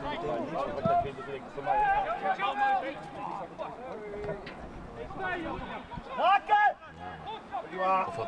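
Men's voices calling and shouting across a football pitch during play, with louder calls about two seconds in and again a little after six seconds.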